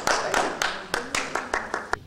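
Small audience applauding, with distinct individual claps rather than a dense roar; the clapping stops abruptly near the end.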